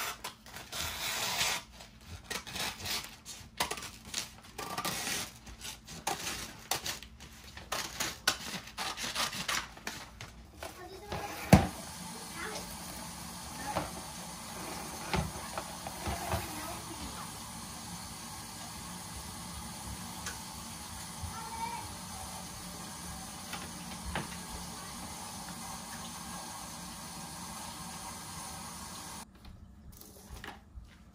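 Scissors cutting through freezer paper pulled off a roll, with the paper crinkling and rustling in quick, irregular strokes for about ten seconds. Then comes a single sharp knock, the loudest moment. After it there is a steadier, quieter stretch with occasional light clicks and taps as a box of plastic cling wrap is handled.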